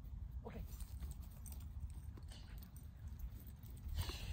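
Low, steady rumble of wind on the microphone, with a man calling "okay" about half a second in.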